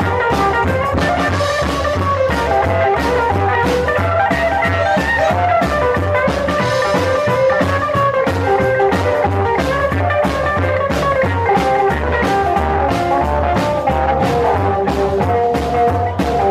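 Live rockabilly band playing an instrumental passage: a hollow-body electric guitar picks out a busy run of notes over a steady snare-drum beat from a standing drummer and a pulsing upright bass.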